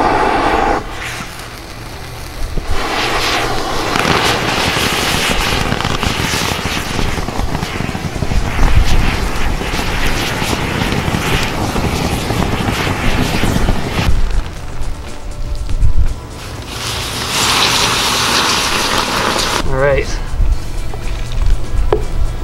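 Thermite burning with a loud hissing roar that starts suddenly about two and a half seconds in and runs for about eleven seconds. A shorter burst of hiss comes a few seconds after it dies down.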